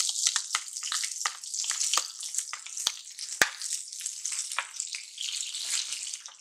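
Chopped onion and green chillies sizzling as they hit hot oil in a pan with mustard, cumin and sesame seeds, a steady high hiss with many sharp crackling pops. The loudest pop comes about three and a half seconds in.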